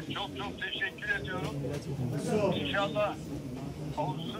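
Speech: a man's voice talking through a mobile phone's loudspeaker, thin and cut off at the top, over the low murmur of a crowded room.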